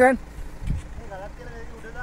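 A man's loud call right at the start, then shorter voice calls about halfway through, guiding the driver. Underneath, the low, steady running of a Kia Sorento SUV's engine as it creeps down a steep concrete-strip track.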